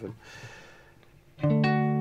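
Three-string cigar box guitar: a chord is struck once about a second and a half in and left to ring out, slowly fading.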